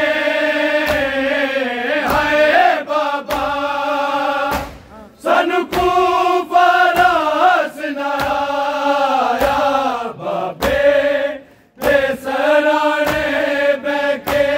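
Noha being sung: a male lead reciter chants a mournful lament in long held lines, with a group of men singing along. Sharp claps of hands striking bare chests (matam) sound about once a second, with short pauses between the sung lines.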